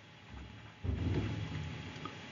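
A low rumble starts about a second in and holds until the end, quieter than the surrounding speech.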